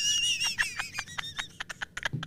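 A woman's high-pitched squealing laughter: one long held squeal sliding slightly down in pitch, breaking into a quick run of short breathy laugh bursts that fade near the end.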